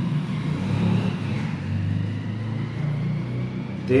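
A steady low rumble with no clear pattern, swelling a little in the middle, of the kind left by road traffic or a running motor.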